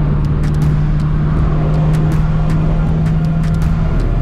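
LS1 V8 engine in a Mazda FD RX-7 cruising at steady freeway speed, heard from inside the cabin as a loud, even low drone with road and wind noise.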